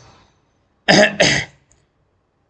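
A man coughing twice in quick succession, about a second in.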